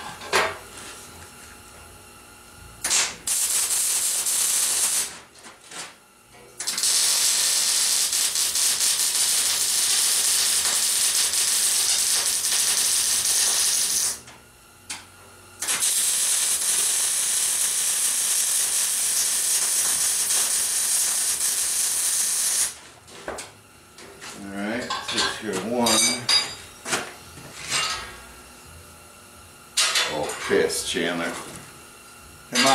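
MIG welding arc crackling and hissing on steel in three runs: a short bead of about two seconds, then two longer beads of about seven seconds each, with short pauses between them. A few seconds of broken, uneven sounds follow near the end.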